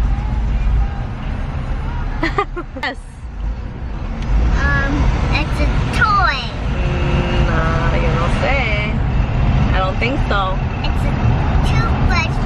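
Steady low rumble of a car's road and engine noise heard inside the cabin, under a young girl's voice that talks or sings through the second half.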